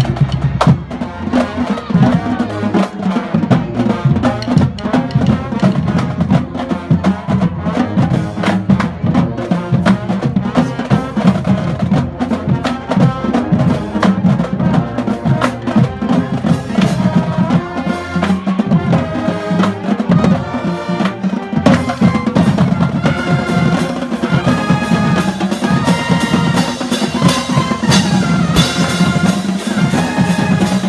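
Marching band playing in the stands: the drumline's snares, bass drums and cymbals keep a steady beat, and the brass (trumpets and sousaphones) play over it, the horns growing stronger in the second half.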